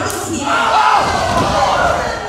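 A sharp slap lands right at the start, and about half a second later the wrestling crowd breaks into loud shouting and yelling in reaction.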